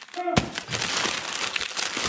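Plastic snack wrappers crinkling continuously as a hand rummages through packages in a plastic tote, starting about half a second in.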